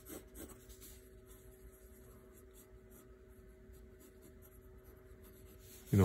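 Graphite pencil sketching on paper: faint, scratchy strokes, clustered in the first second, over a low steady hum.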